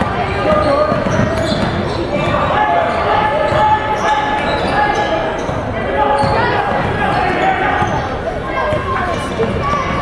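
Basketball being dribbled on a hardwood gym floor, repeated bounces, with voices calling out in a large, echoing gym.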